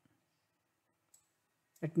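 Near silence with a single faint computer mouse click about a second in, then a man's voice starting near the end.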